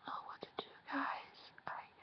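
A woman whispering and breathing out faintly under her breath, with a few short clicks.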